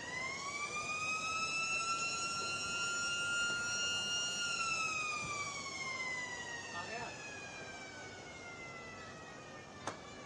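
A single long wailing tone with several overtones: it rises quickly at the start, holds steady for about four seconds, then slowly sinks in pitch and fades. A sharp click comes near the end.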